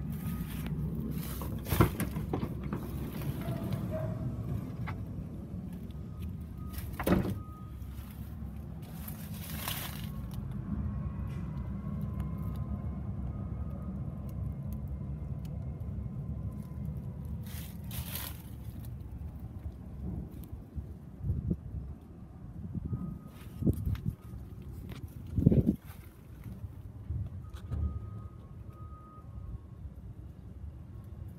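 A Ford Transit van's sliding side door is unlatched with a sharp click and slid open, followed by scattered knocks and thumps of handling over a steady low rumble.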